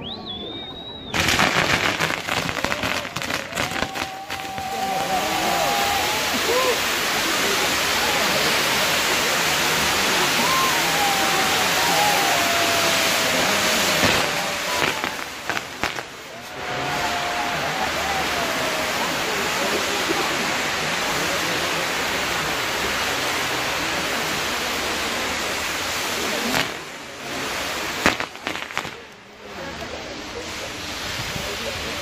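Fireworks-castle spark wheels and fountains burning: a loud, continuous hiss of burning gunpowder that starts with crackling about a second in. It breaks off briefly about halfway, resumes, and dies down near the end with a last sharp pop.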